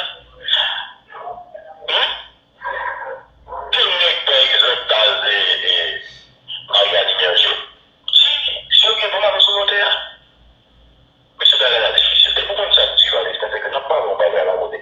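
People talking in bursts with short breaks, the voices thin-sounding with almost no bass. A near-silent gap about ten seconds in.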